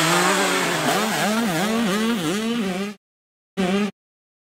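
Motocross bike engine at high revs, its pitch dipping and rising about three times a second as the throttle is chopped and reopened. It cuts off abruptly about three seconds in, with a short burst of the same engine note just before the end.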